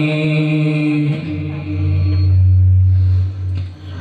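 Voices chanting a prayer in long held notes, with no drumming; about a second in the chant drops to a lower sustained note, which fades out near the end.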